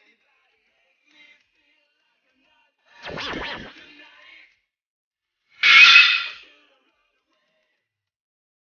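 Two short editing sound effects over on-screen graphics, the first about three seconds in and the second, louder and brighter, about six seconds in, with silence around them.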